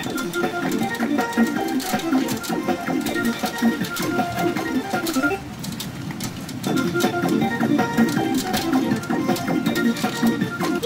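Background music and effect sounds from a P Umi Monogatari 4 Special BLACK pachinko machine as its reels spin, with many small clicks through it. The music drops away briefly a little past the middle, then comes back.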